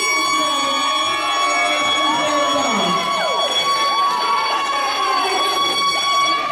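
Handheld air horn blown in one long steady blast, with people whooping and shrieking over it in celebration.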